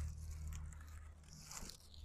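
Plastic grocery bags crinkling and rustling as they are handled, loudest about one and a half seconds in, over a faint steady low rumble.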